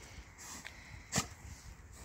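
Akita Inu sniffing the ground, with one short, sharp sound from the dog about a second in.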